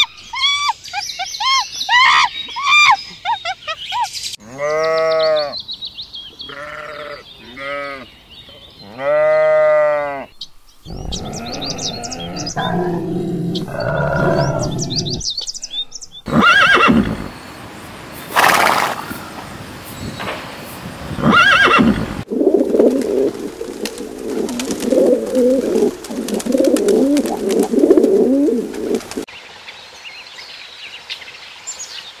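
A succession of different animal calls. First come high chirping squeaks of squirrel monkeys, then several drawn-out calls that rise and fall in pitch. From about the middle come a pig's low grunts and snorts, and then a rough, wavering call that lasts until near the end.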